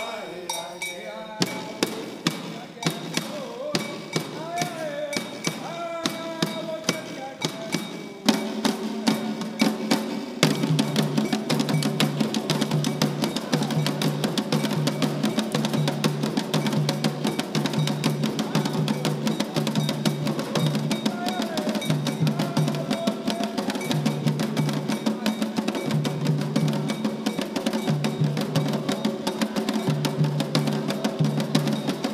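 Atabaque hand drums of a Candomblé drumming group playing with voices singing. There are sparse single strokes under the singing at first; the drums come in about eight seconds in and settle into a dense, steady rhythm from about ten seconds on.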